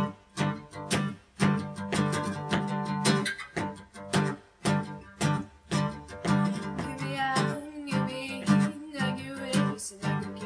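Acoustic guitar strummed in a steady, regular rhythm of sharp chord strokes. A woman's singing voice comes in over the guitar about seven seconds in.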